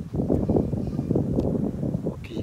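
Wind buffeting the microphone: a gusty low rumble that surges and dips.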